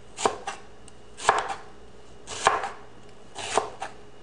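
Chef's knife slicing a red onion on a plastic cutting board: four unhurried cuts about a second apart, each ending in a sharp knock of the blade on the board followed by a lighter tap.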